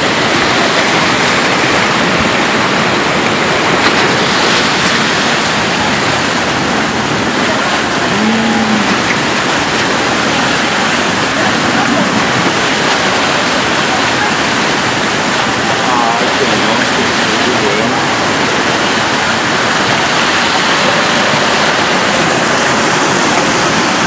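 Flash flood of mud, water and debris rushing past close by: a loud, steady roar of churning floodwater.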